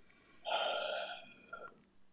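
A man's long, audible breath, lasting about a second, taken just before he starts to speak.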